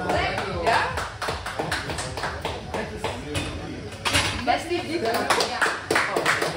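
Onlookers clapping and cheering after a back squat attempt, with scattered voices calling out over the claps.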